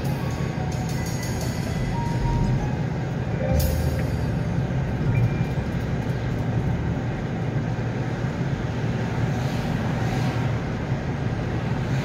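Steady low rumble of a car driving along the road, heard from inside the moving car, with soft background music playing over it.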